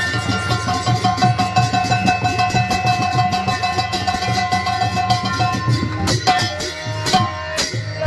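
Kirtan instrumental interlude: a harmonium holds a steady reed melody over a fast drum beat and rapid hand-clapped percussion, with a few sharp strikes near the end.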